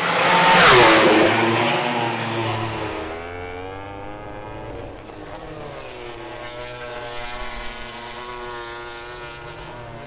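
A MotoGP race motorcycle passing the pit wall at speed, loudest about a second in, its engine note dropping in pitch as it goes by. Then two MotoGP bikes running through corners, their engine notes falling and rising.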